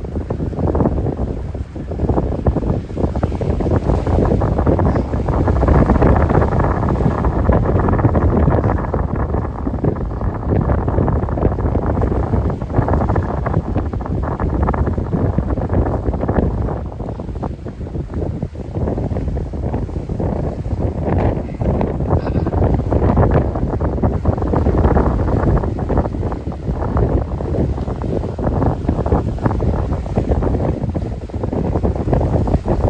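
Loud wind buffeting the microphone by choppy sea, a rumbling rush that rises and falls in gusts.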